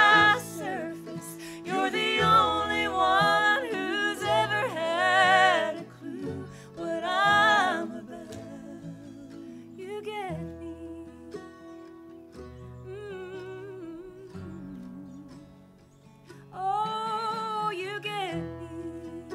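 A bluegrass band of mandolin, acoustic guitars and upright bass playing a song, with a woman singing lead. The singing is strongest in the first half, it turns quieter and mostly instrumental in the middle, and the voice comes back in near the end.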